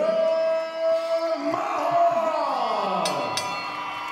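Ring announcer stretching out a boxer's surname in one long held call over the arena PA, the pitch rising and then sliding down in a long fall at the end, with crowd noise beneath.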